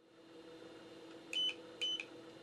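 Two short, high electronic beeps about half a second apart, past the middle, over a steady low hum.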